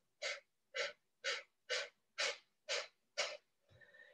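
Seven quick, forceful exhales through the nose, about two a second, each a short sharp puff of air: a demonstration of Kapalabhati, the 'breath of fire' breathing technique.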